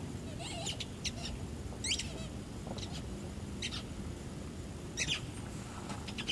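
A puppy's squeaky toy squeaking in short, high bursts, about six times at irregular intervals.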